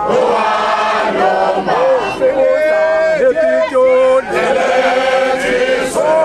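A group of men chanting a Zulu song together in unison, with long held notes and slides between them.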